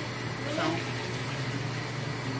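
Steady hiss of background room noise with a low hum underneath, and a brief spoken word over it.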